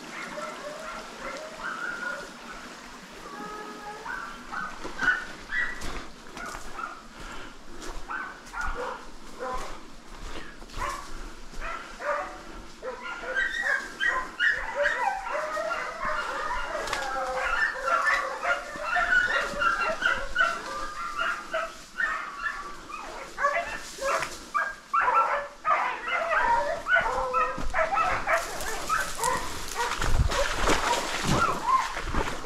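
A pack of hunting dogs barking and yelping while trailing a wild boar, the calls growing thicker and louder about halfway through. Sharp crackles of footsteps and brush come in between.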